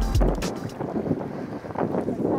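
Background music with a drum beat cuts off about half a second in. It gives way to outdoor wind noise buffeting the microphone, with water sounds underneath.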